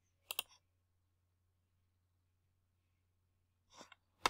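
A computer mouse button clicked twice in quick succession shortly after the start, then near silence, with a short soft noise near the end.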